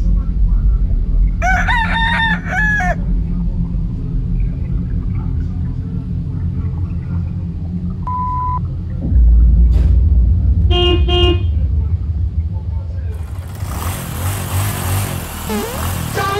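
Steady low rumble of street traffic with a car horn tooting briefly about eleven seconds in. About two seconds in there is a short high call that bends in pitch, and near the end a broad hiss swells up.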